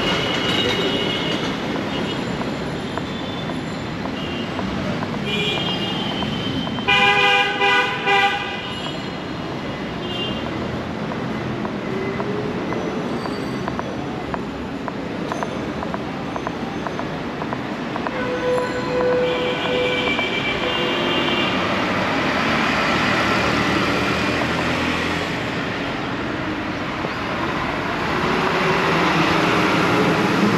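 Busy street traffic, with buses passing close by and vehicle horns sounding. The loudest is a run of about four short, loud horn blasts about seven seconds in, and another horn sounds for a couple of seconds after the middle. Engine and road noise swells near the end as a bus passes close.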